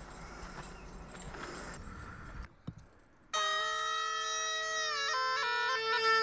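Dalmatian diple with a bag (a bagpipe with a double chanter) starting a little over three seconds in: a held note over a steady lower tone, then the melody stepping quickly between notes. Before it, a couple of seconds of low outdoor noise that cuts off.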